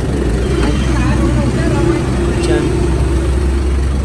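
Isuzu QKR 270 light truck's diesel engine idling steadily, heard close to its exhaust, with a deep hum that comes in at the start.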